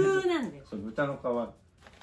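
Speech: a person talking in a small room, with a pause of about half a second near the end.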